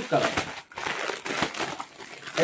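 Clear plastic garment packets crinkling irregularly as they are handled and a T-shirt is slid out of its bag.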